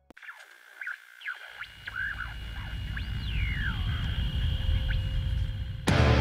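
Atmospheric intro of a heavy metal song: a low drone swells steadily, with scattered chirps and sweeping pitch glides above it. Just before the end the full band comes in loud with distorted electric guitars.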